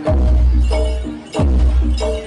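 Live jaranan dor gamelan music: heavy bass-drum beats, one at the start and another a little over a second in, each leaving a deep boom, under ringing pitched metal gong-chime tones and bright metallic clashing.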